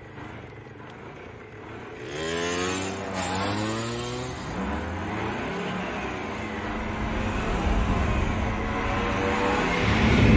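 Vehicle engines revving up and accelerating, a dune buggy and a semi tanker truck. From about two seconds in an engine's pitch rises as it revs up, rising again a couple of seconds later. Toward the end a deeper, heavier engine rumble builds.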